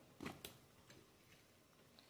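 Near silence: quiet room tone with a couple of faint clicks in the first half second.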